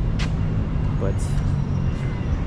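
Steady low outdoor rumble, with one short spoken word about a second in.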